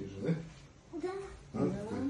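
A young child's voice: a few short, high vocal sounds with no clear words.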